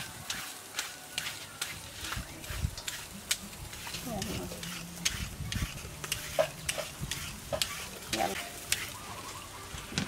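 A carrot being grated by hand on a metal grater, with short rasping strokes about three times a second.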